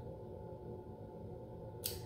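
Low, steady room hum with no distinct events, and a quick breath in near the end.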